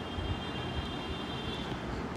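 Steady low background rumble and hiss, with a faint high-pitched whine that stops near the end.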